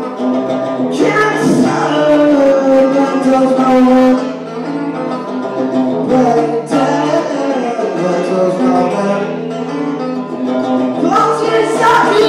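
Electric guitar played live through an amplifier: a few hard strummed chords that ring on between strokes, in an instrumental break of a rock ballad.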